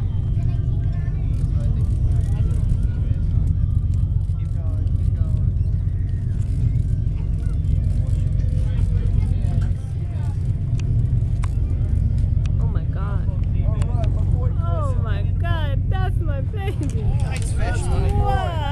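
Fishing boat's engine running with a steady low hum, with voices over it; from about two-thirds of the way through, higher, excited voices grow louder over the hum.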